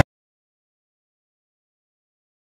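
Digital silence: the rap music cuts off abruptly right at the start, leaving nothing to be heard.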